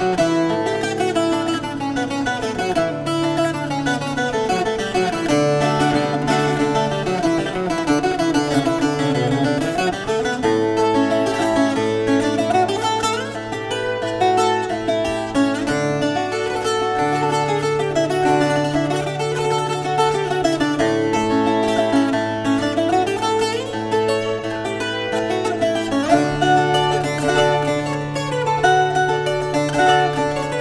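Azorean viola da terra, a steel-strung twelve-string folk guitar, played solo: a lively dance tune picked as a running melody over ringing low bass notes.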